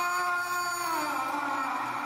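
A man's long drawn-out scream, held on one pitch, then sliding down and fading near the end.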